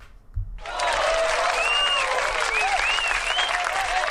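Crowd applause and cheering with whoops, starting suddenly about half a second in and running on steadily; its abrupt start and clipped top end mark it as a recorded sound effect played into the mix.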